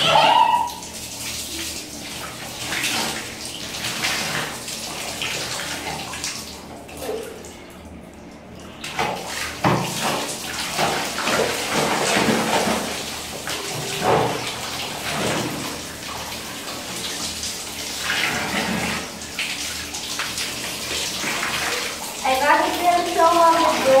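Water sloshing and splashing in a plastic basin as a toy doll is washed by hand, then a wall tap running with water splashing steadily from about nine seconds in.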